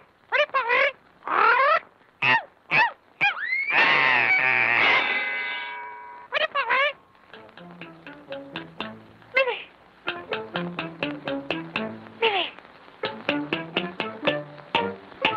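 Early sound-cartoon soundtrack: a string of short squeaky cries that slide up and down in pitch, a loud long held cry about four seconds in, then orchestral music with quick plucked notes.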